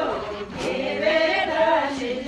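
A group of voices singing together in chorus, several melodic lines overlapping.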